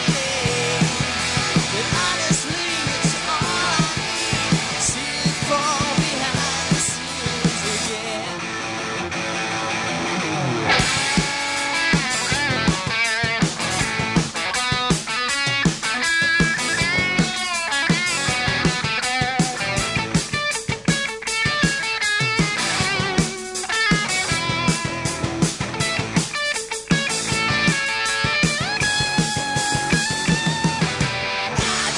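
Rock band playing live on electric guitars, bass and drum kit in an instrumental stretch. About ten seconds in, the sound changes from a sustained wash of guitars to a choppy, tightly rhythmic section punctuated by drum hits.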